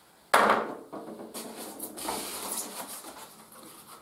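A hard plastic welding mask set down on a tabletop with a loud knock about a third of a second in. Lighter clicks and a rustle of packaging being handled follow.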